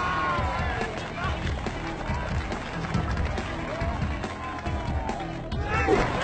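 Voices over background music, with dense low-pitched sound underneath.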